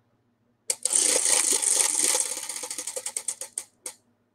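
A spin-to-win prize wheel spinning, its pointer clicking rapidly against the rim pegs. The clicks slow and spread apart until the wheel stops near the end.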